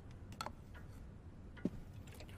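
Quiet room tone with a few light clicks, a small knock about one and a half seconds in being the loudest.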